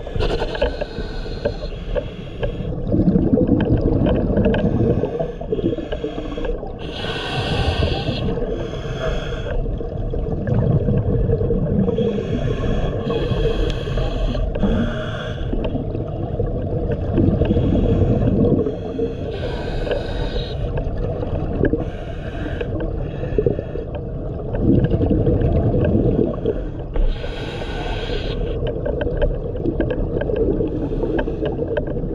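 A scuba diver breathing through a regulator underwater: a hiss on each inhale, then a low burble of exhaled bubbles, about one breath every seven seconds, four breaths in all.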